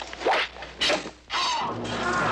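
Three quick whooshing swishes, about half a second apart, like sword cuts slicing the air in a sword-fight sound effect.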